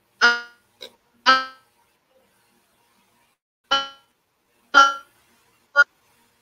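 A voice coming through a failing video-call connection in clipped fragments: five brief, chopped bursts of sound with silence between, the audio breaking up.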